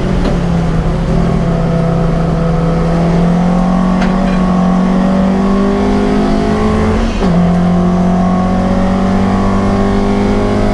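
Alfa Romeo Giulia Ti's twin-cam four-cylinder engine accelerating hard, heard from inside the cabin: the pitch climbs steadily through a gear, drops at an upshift about seven seconds in, then climbs again.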